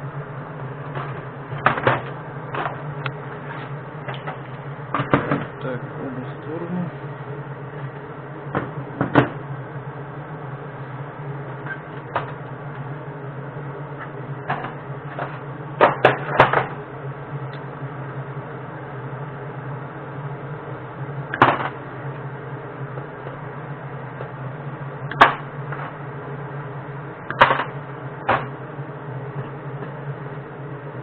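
Metal casting molds for fishing-feeder sinkers being handled on a metal-topped workbench: scattered sharp clicks and knocks every few seconds, with a tight cluster around the middle, over a steady low hum.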